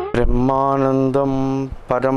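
A man chanting a Sanskrit verse of praise to the guru in a steady, sing-song recitation, on held notes with short breaks.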